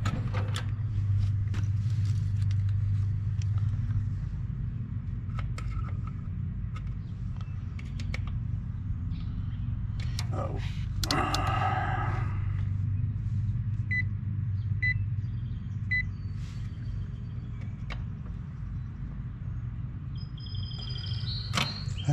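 Meter test leads clicking against the terminals of an air-conditioner condenser's start and run capacitors during a capacitance check, over a steady low hum. Three short high beeps come about a second apart in the middle.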